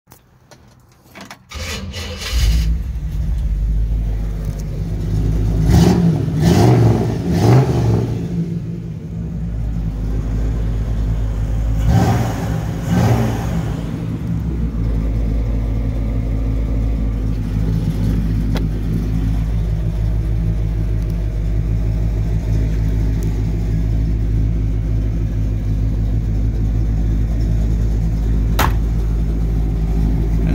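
A 1960 Chevrolet Impala's 348 big-block V8 with tri-power carburetors starting about two seconds in. It is blipped several times, around six to eight seconds and again around twelve to thirteen seconds, then settles into a steady idle, with one short click near the end.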